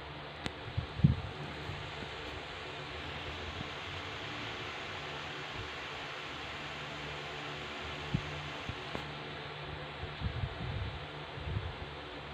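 Steady background hiss of a quiet room, with a few soft low thumps: the loudest about a second in, and a short cluster near the end.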